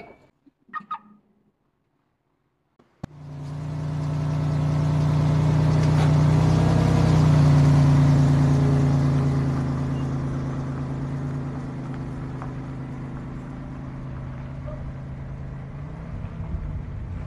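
Toyota Fortuner SUV's engine running as it drives slowly up and stops close by. The sound starts suddenly about three seconds in, grows to its loudest about halfway through, then eases to a steady idle.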